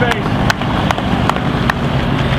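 Hand clapping, an even beat of about two to three claps a second, over a steady low hum.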